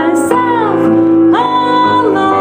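A woman singing with piano accompaniment: a falling sung phrase, then a long held note beginning about one and a half seconds in, over sustained piano chords.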